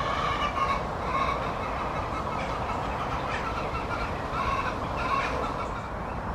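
Domestic fowl calling: a series of short calls, about six spread through the few seconds.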